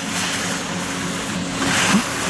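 Skis carving and scraping over hard-packed snow, a rushing hiss that swells near the end as the racer turns through a slalom gate. A steady low hum runs underneath.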